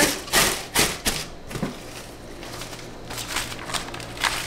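Honeycomb kraft paper wrap rustling and crinkling as it is pressed into a cardboard box, with several crisp rustles in the first second and a half, then quieter handling.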